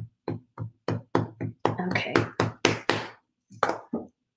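Ink pad repeatedly tapped onto a clear stamp on an acrylic block to ink it, a quick run of short knocks about four a second.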